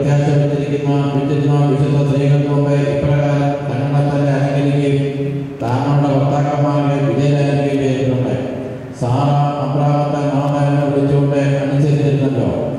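A man's voice chanting a liturgical prayer in long phrases on a near-steady reciting pitch, pausing briefly for breath about five and a half seconds and again about nine seconds in.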